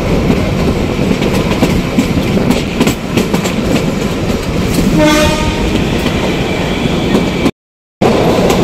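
Kalka–Shimla narrow-gauge toy train running at speed, heard through an open carriage window: a steady rumble with rapid, irregular clicking and clattering of wheels over the rails. A brief pitched tone sounds about five seconds in, and the sound cuts off suddenly just before the end.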